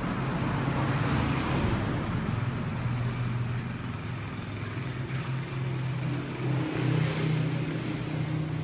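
Steady low mechanical hum with a rushing background noise, like an engine or traffic running nearby, broken by a few faint knocks.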